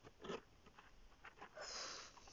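Faint mouth and breath sounds close to a phone microphone: a few small clicks and a short soft noise early, then a soft breathy hiss near the end.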